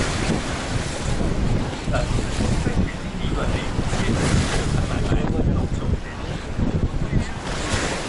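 Rough, churning tidal water of the Qiantang River surging and washing against a concrete embankment wall after the tidal bore, with wind buffeting the microphone.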